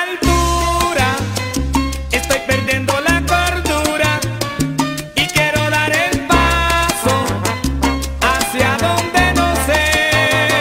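Salsa band playing an instrumental passage: a low bass line moving note by note under dense, sharp percussion, with melodic instrument phrases that scoop up into their notes.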